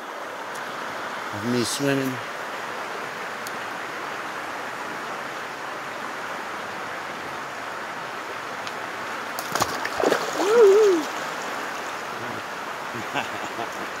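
Steady rush of a fast-flowing river current. About ten seconds in, a sharp knock is followed by a loud, wavering vocal cry lasting about a second, the loudest sound here.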